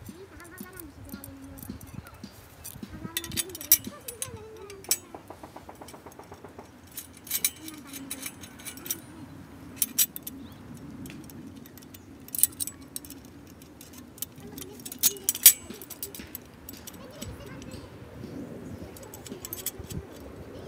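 Metal tubes and brackets of a portable camp grill being fitted together by hand: sharp metallic clinks and clicks in scattered clusters, with a quick run of small ticks about five seconds in.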